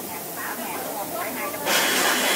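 Automatic down-filling machine blowing a charge of down through its nozzle into a jacket: a loud, short hiss of compressed air that starts near the end.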